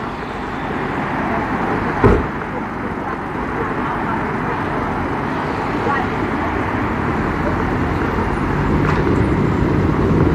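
Car driving through city traffic: steady road and engine noise that grows slowly louder, with one sharp knock about two seconds in.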